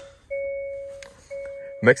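Hyundai Elantra N's interior warning chime sounding twice, about a second apart, each ding fading away before the next.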